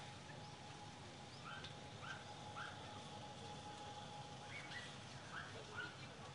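Faint, distant dogs yapping in short calls: a few about a second and a half in, then another run of them near the end, over a steady outdoor background.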